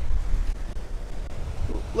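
Wind buffeting the microphone as a heavy, unsteady low rumble, over surf washing onto a pebble beach.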